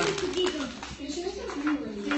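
Voices only: a short spoken word, then low, murmured voice sounds.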